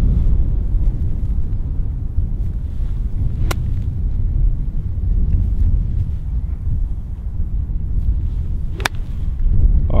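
Wind buffeting the microphone, a steady low rumble, with a sharp click about three and a half seconds in. Near the end comes the crisp strike of a 5 iron hitting a golf ball off the turf.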